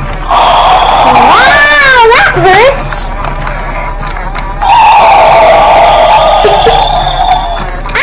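Zuru Robo Alive Attacking T-Rex toy playing its electronic roar and growl sounds through its small speaker: a rough roar in the first two seconds with a wavering rising-and-falling cry, and a longer roar from about the middle almost to the end.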